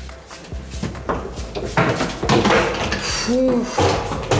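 Background music with a number of short knocks and rattles from hard-shell rolling suitcases being pulled through a doorway.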